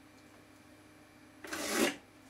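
A ballpoint pen drawn in one quick stroke along a metal ruler on a wooden blank: a single scratching scrape of about half a second, near the end.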